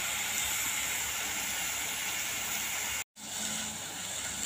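Ridge gourd, tomato and onion frying steadily in a kadai, a continuous sizzle that cuts out briefly about three seconds in.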